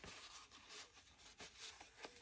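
Near silence, with faint soft rubbing of an alcohol-dampened wipe on a small glass shot glass as it is cleaned.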